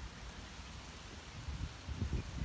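Wind buffeting an outdoor handheld microphone: an uneven low rumble that gusts louder near the end.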